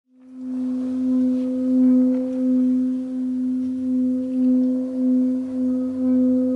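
Brass singing bowl sounding one sustained tone with a weaker overtone an octave above. It swells in over the first half second, then holds with a slow wavering in loudness.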